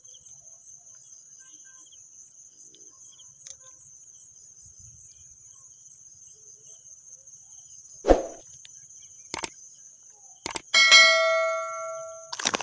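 Crickets chirring steadily at a high pitch. Near the end comes a loud thump, two sharp clicks and then a bell-like ding that rings and fades over about a second, the sound effect of an on-screen subscribe-button animation.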